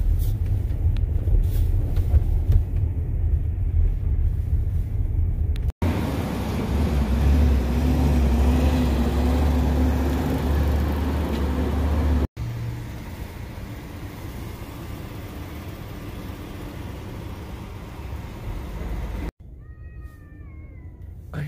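Low rumble of road and traffic noise heard inside a Tesla electric car's cabin while driving in city traffic, in three stretches joined by abrupt cuts, the middle one loudest.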